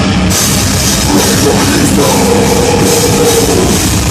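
Heavy metal band playing loud and live: distorted electric guitars, bass and a drum kit with cymbals, a note held steady through the second half.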